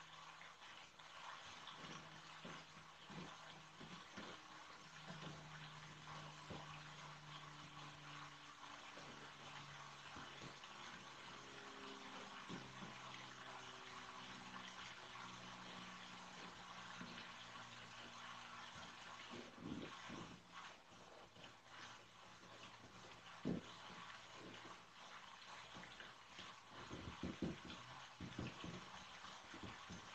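Quiet handling of cardboard: soft rustles, a sharp tap about two-thirds of the way through and a short cluster of knocks near the end as hands press cardboard panels into place. Faint held tones that shift in pitch sound underneath.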